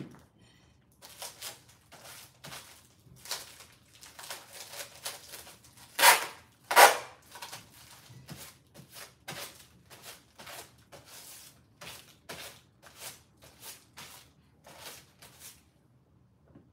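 Clothes rustling as garments are handled and folded, a run of short irregular swishes, with two louder swishes about six and seven seconds in.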